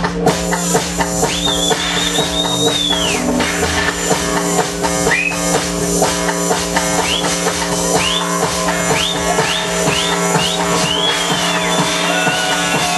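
House/techno DJ set played loud over an open-air sound system: a steady beat under a held low tone. A long high sweeping tone rises and falls in the first few seconds, short high chirps repeat about twice a second through the middle, and another long high sweep comes near the end.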